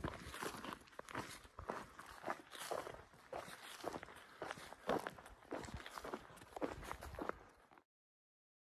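A hiker's footsteps on a grassy trail, about two steps a second. They stop abruptly just before the end.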